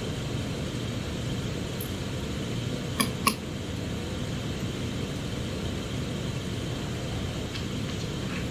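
Steady ventilation hum of the room, with two short clicks about three seconds in, a third of a second apart.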